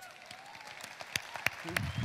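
Audience applause in a large hall, light at first and building, with a few sharp single claps standing out.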